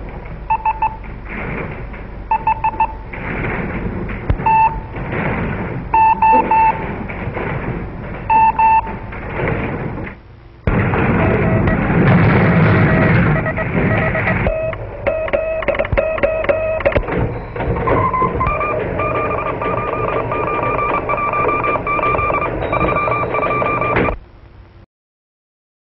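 Morse code sent as short and long beeps of a single tone, in dot-and-dash groups, over a steady hiss. About ten seconds in, this gives way to a louder, denser mix of overlapping steady tones and noise.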